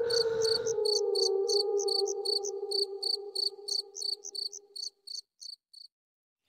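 Crickets chirping steadily at about four chirps a second, thinning out and stopping near the end. Under them a low, slightly wavering drone fades away about five seconds in.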